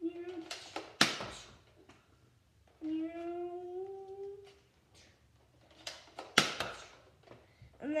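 Two sharp plastic snaps about five seconds apart from a pump-action Nerf blaster being primed and fired, with a hummed vocal note between them.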